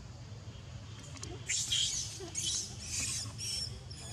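A baby macaque squealing: four short, high-pitched squeaks over about two seconds, starting about a second and a half in. A steady low background rumble runs underneath.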